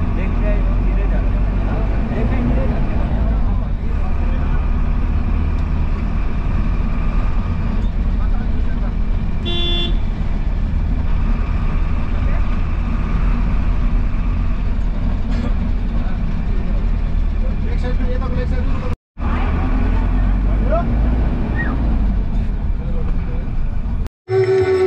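Engine and road noise heard from inside a moving bus cabin, a steady low rumble, with a short horn toot about ten seconds in.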